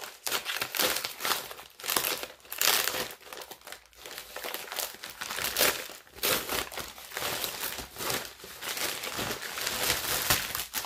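Parcel packaging crinkling and rustling in irregular bursts as it is opened by hand.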